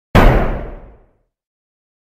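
A single booming impact sound effect with a deep low end, struck once and dying away over about a second.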